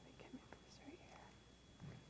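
Near silence: faint whispering voices with a few small clicks, and a soft low thump near the end.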